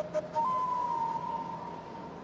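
A single clean high tone held for about a second and a half, sagging slightly in pitch, just after a shorter, broken lower tone.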